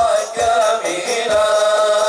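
Male voices chanting a sholawat in unison, settling into a long held note, over hadrah frame drums (rebana) giving deep, widely spaced thumps.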